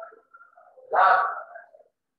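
A man's voice: one loud, drawn-out syllable about a second in, with brief softer voice sounds before it.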